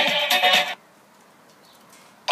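Dance music playing through a small Wowee One gel-audio portable speaker, cutting off about three-quarters of a second in, leaving only faint hiss in the gap before the next track.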